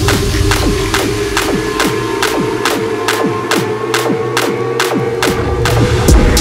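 Dubstep track: a heavy electronic bass line with sharp percussive hits at a steady pace of about two a second, each carrying a short falling pitch slide.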